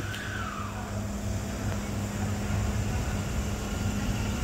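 Hanshin 1000 series electric train pulling slowly into the platform: a steady low hum and rumble, with a faint high whine that falls in pitch in the first second.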